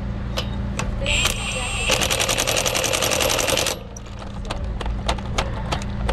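Cordless impact wrench on a truck's front-wheel lug nut, snugging the nut back down. It spins up with a short high whine about a second in, then hammers rapidly for about two seconds before stopping. A steady low hum runs underneath.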